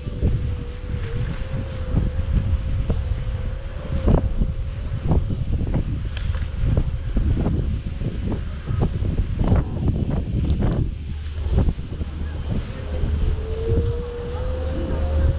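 Wind buffeting an action-camera microphone: a heavy low rumble broken by many short gusts and thumps. A faint steady whine runs under it, fades out about four seconds in, and comes back rising in pitch near the end.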